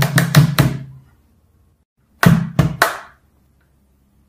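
Guitar strummed in quick strokes that stop about a second in, followed after a pause by three sharp knocks in quick succession.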